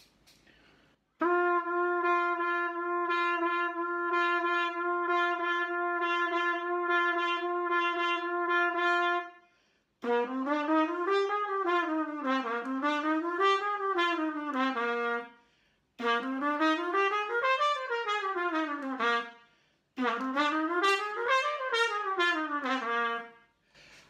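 Trumpet playing legato tonguing in triplets on the 'da-dlo' syllables, with a small diaphragm-pushed accent on the last note of each group. First comes a long run of repeated tongued notes on one pitch. Then come three phrases of notes running up and back down, each followed by a short gap.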